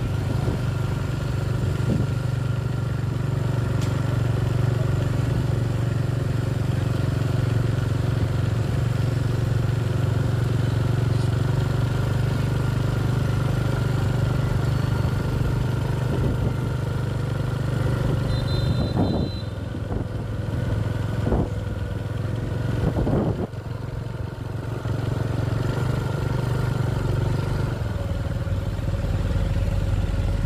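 A motorbike engine runs steadily while riding along a city street, with other motorbikes passing. A short high beep sounds about two-thirds of the way through, followed by a few knocks.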